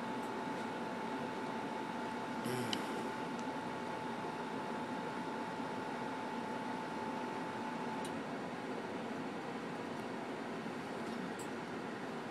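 Steady background hiss with a thin, steady hum that cuts off about eight seconds in, and one brief knock near the start.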